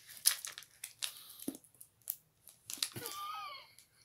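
Plastic chocolate-bar wrapper crinkling and tearing as it is pulled open by hand, in a string of short irregular crackles. Near the end comes a brief voice sound.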